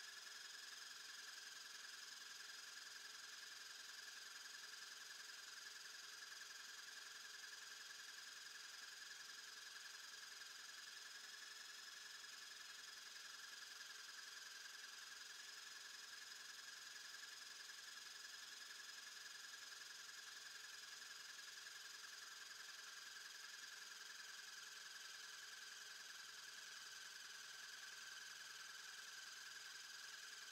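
Faint, steady whine of the small electric motors driving the air pumps of a brick-built Liebherr L586 wheel loader model, running under load while the pneumatic boom lifts the bucket; the pitch wavers slightly.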